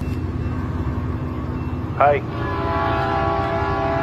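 A train horn blowing one long steady blast that starts about halfway through, over a low rumble, warning of a train approaching the crossing. A man shouts "hey" just before the horn begins.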